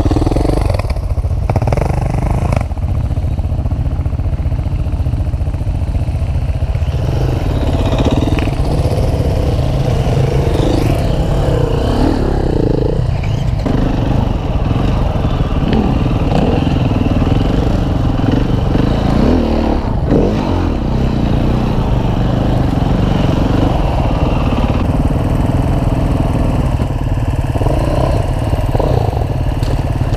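Husqvarna FE 501 single-cylinder four-stroke enduro engine running under way off-road, its pitch rising and falling as the rider works the throttle.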